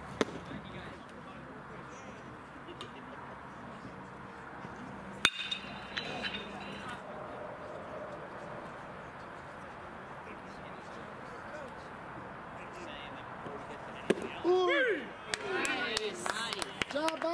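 Baseball popping into the catcher's mitt just after the start, then steady ballpark background noise with a single sharp, ringing crack about five seconds in. Near the end another pitch smacks into the mitt and is followed at once by players' voices calling out.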